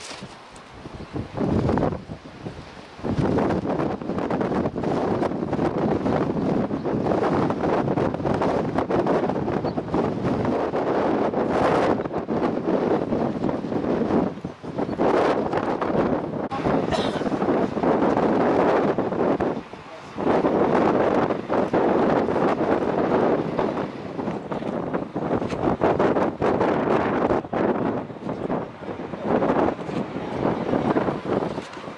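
Strong wind buffeting the camera microphone in loud, uneven gusts, easing off briefly near the start and again about two-thirds of the way through.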